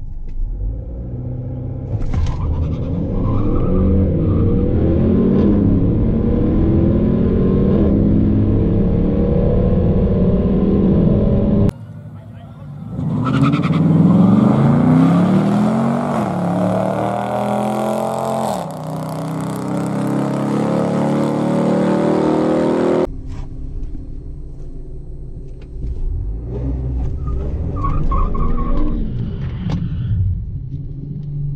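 Honda Accord Sport's turbocharged 2.0-litre four-cylinder at full throttle down a drag strip, heard from inside the cabin: about two seconds in the engine note jumps up and then climbs in pitch again and again, dropping back at each upshift of the 10-speed automatic. Near the middle the sound cuts to a race heard from beside the track, two cars accelerating away with the same climbing and shifting pattern. Then it cuts to a car engine running more quietly, with a short rev near the end.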